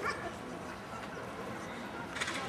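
A dog giving a short, high yip right at the start, over steady outdoor background noise.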